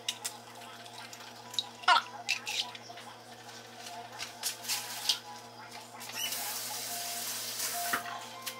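Eggs being cracked and dropped into a frying pan: a few sharp clicks and taps of shell, then a steady rushing hiss that starts suddenly about six seconds in and is the loudest sound.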